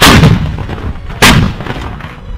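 Two shots from M777 155 mm towed howitzers about a second apart, each a sharp blast that rumbles away.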